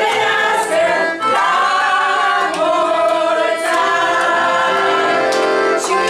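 A small mixed group of men and women singing a song together, in long held notes.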